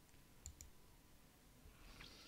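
Two faint, quick computer mouse clicks close together about half a second in, setting the final point of an ellipse in the CAD program; otherwise near silence.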